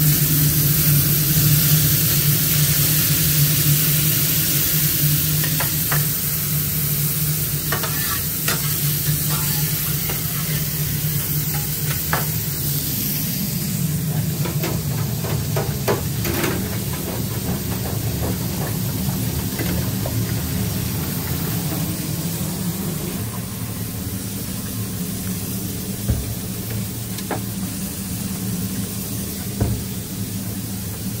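Burger patties sizzling on a flat-top griddle and fries frying in a deep fryer, with occasional short metal clinks and scrapes from a spatula. A steady low hum runs underneath.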